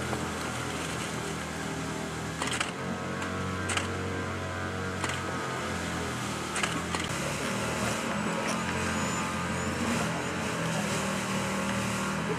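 A steady low hum with a few short, sharp clicks scattered through it.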